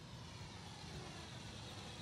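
DEERC D50 quadcopter's propellers buzzing faintly in flight at its slowest speed setting, with a thin whine that drifts slightly in pitch over a low steady hiss of outdoor air.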